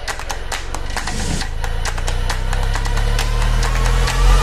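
Intro sound design: a low rumbling drone that grows steadily louder, with quick irregular clicks and ticks over it and a faint rising tone near the end, building toward a hit.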